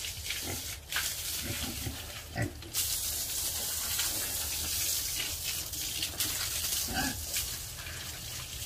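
Water spraying from a hose onto a concrete pen floor and pigs: a hiss that gets much louder about three seconds in. Pigs give a few short calls over it.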